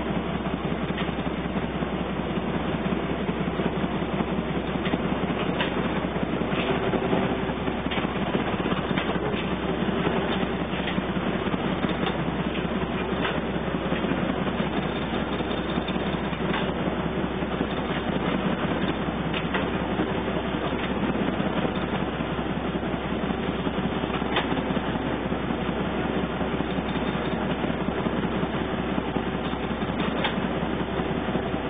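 Wichmann 3ACA three-cylinder two-stroke diesel running steadily with the ship under way, heard from the wheelhouse.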